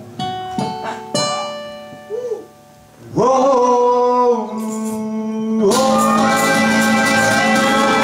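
Acoustic guitar picking a few single notes that ring out. After a short lull, a blues harmonica bends up into a long held note about three seconds in, and the guitars come in fully under it near six seconds.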